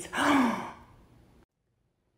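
A man's breathy, theatrical gasp, about half a second long with a slight falling pitch, fading out within the first second and a half.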